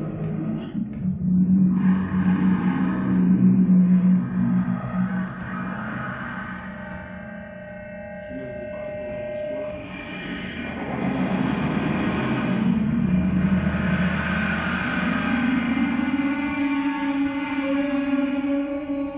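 Live experimental electronic drone music: sustained low droning tones layered with steady higher overtones. It thins out and drops in level through the middle, then swells back fuller about ten seconds in, the low drone rising in pitch near the end.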